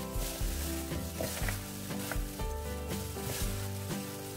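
Hands in plastic kitchen gloves tossing a wet, seasoned acorn-jelly and vegetable salad in a bowl: a steady squishing and crinkling of gloves and leaves. Light background music plays under it.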